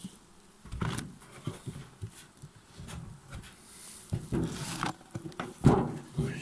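Flat hive cover board being handled over a small bee colony: scattered knocks and scrapes, with a louder knock near the end. Honeybees buzz faintly around the open hive.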